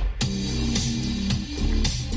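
Music with guitar and drums playing from a CD in a mid-90s portable CD player, powered from the car's 12-volt cigarette lighter socket.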